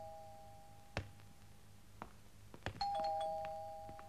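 Two-tone electric doorbell chime ringing ding-dong, a higher note followed by a lower one, each ringing out slowly. The end of one ring fades at the start, and the bell is rung again a little under three seconds in; a few faint clicks fall between the rings.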